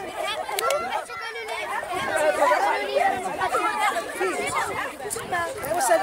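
Several people chattering at once outdoors, adults' and children's voices overlapping with no single speaker standing out.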